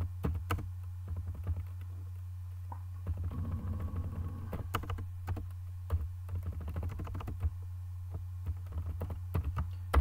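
Typing on a computer keyboard: irregular runs of key clicks with short pauses, over a steady low electrical hum.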